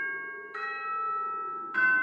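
Background music of slow, chime-like mallet notes. A new chord is struck about half a second in and again near the end, and each rings on and fades.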